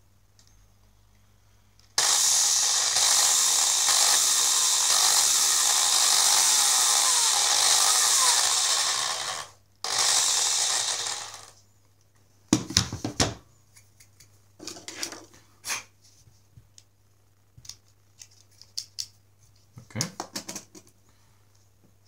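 Corded electric drill with a 3 mm bit running, boring a hole through a plastic LEGO pneumatic cylinder inlet: a steady run of about seven seconds, a brief stop, then a second short burst. A few scattered clicks and knocks follow.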